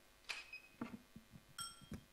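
Two short metallic dings about a second apart, the second ringing with several clear tones, among soft knocks and thumps of handling.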